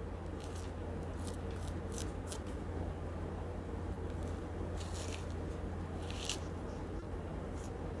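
An orange being peeled by hand: short, faint crackles and snaps of peel and pith tearing away, scattered irregularly, over a steady low hum.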